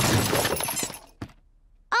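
Cartoon sound effect of a jumble of toys clattering out of two small cases onto the floor as they are tipped out, a loud rattling crash that dies away after about a second.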